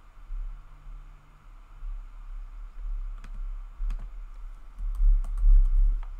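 Computer keyboard typing: a few scattered keystrokes, then a short run of them about five seconds in, over a low rumble that swells near the end.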